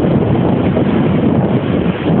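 Wind buffeting the microphone over the rush of surf breaking on the beach, a loud, uneven rumbling noise with no distinct events.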